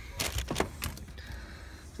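A few scattered light clicks and knocks over a low rumble, mostly in the first second.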